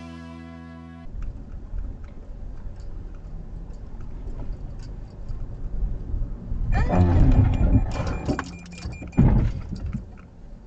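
Music ends about a second in, followed by the low, steady noise of a car driving in city traffic, heard from inside the car. A loud, noisy burst comes around seven seconds in, and a sudden loud thump just after nine seconds.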